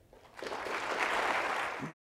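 Lecture audience applauding, rising about half a second in and cut off abruptly near the end.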